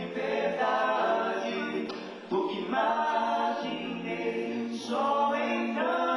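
Male gospel vocal group singing a cappella in several-part harmony through a microphone, with a short pause between phrases about two seconds in.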